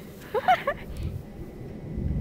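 A child's brief high-pitched vocal sound, a short exclamation or laugh, about half a second in, followed by a low rumbling noise for the rest of the moment.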